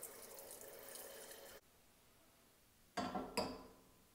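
Kitchen tap running a thin stream of water into a metal saucepan, a steady hiss that stops abruptly about a second and a half in. Near the end come two loud clanks of the metal pan being set down on a gas hob's grate.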